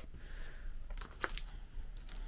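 Quiet room tone with three or four light clicks close together about a second in.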